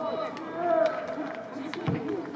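Young players calling out to each other across a football pitch, one loud drawn-out shout about three-quarters of a second in. Near the end comes a short dull thud of a ball being kicked.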